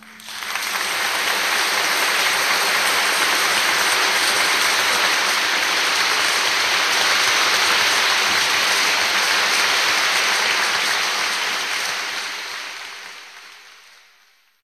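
Concert audience applauding: dense, steady clapping that swells up right after the final chord and fades out near the end.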